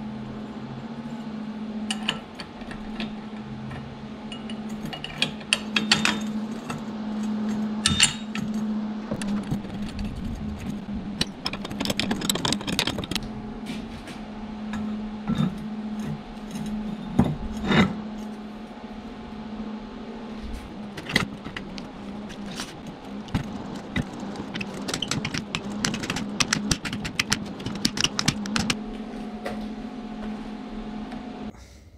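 Metal-on-metal clinks and knocks: a steel strut tube, jig and bar clamps being handled and set down on a steel welding table, in scattered clusters, over a steady low hum.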